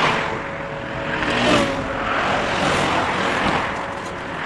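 Road traffic: cars passing one after another, each a rise and fall of tyre and engine noise, with a brief falling engine note about a second and a half in.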